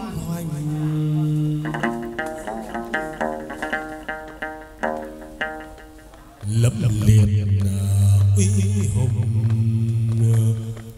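Chầu văn ritual music: a held sung note, then a plucked lute playing a run of repeated notes. About six seconds in, a strong low held note comes back in, with bright percussion strikes over it.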